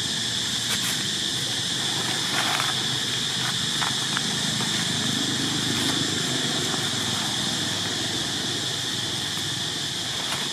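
Steady, high-pitched drone of insects calling in a continuous chorus. A few faint clicks, and a soft low rumble that swells and fades about halfway through.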